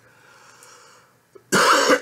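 A man coughs once, loud and sharp, about a second and a half in, after a second of faint breath noise.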